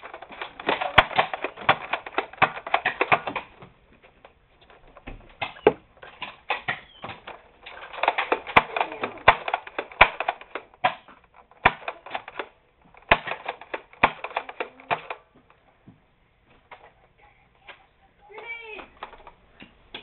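Foam-dart blasters being worked in the middle of a Nerf fight: several bursts of rapid clicking and clattering, each one to three seconds long, with single knocks in between.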